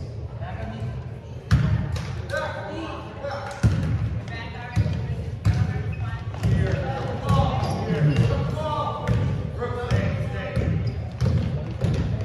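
A basketball bouncing on a hardwood gym floor as it is dribbled during play, a series of sharp thuds spaced irregularly about a second apart, with the loudest two a few seconds in.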